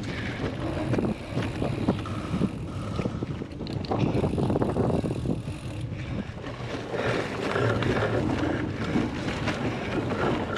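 Bike-mounted action camera on a cyclocross bike riding fast over rough grass and a muddy rut: a steady rumble of knobby tyres with many small knocks and rattles from the bike jolting, and wind buffeting the microphone.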